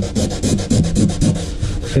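Hand sanding with a sandpaper pad on the fibreglass-and-epoxy rail of a board, in quick, even back-and-forth scraping strokes. It is smoothing and feathering the raised tape-line ridge into the rest of the glassed surface.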